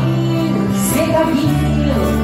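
A country band playing live: acoustic guitars and held bass notes under singing voices.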